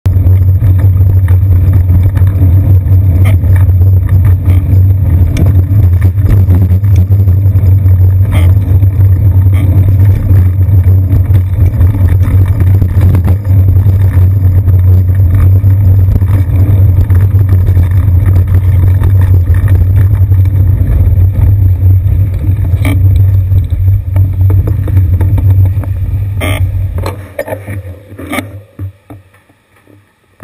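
Loud, steady low rumble of wind and road vibration on a seat-post-mounted GoPro Hero 2 as the bicycle rides through city traffic, with a few sharp knocks from bumps in the road. The rumble falls away suddenly about a second before the end as the bike comes to a stop.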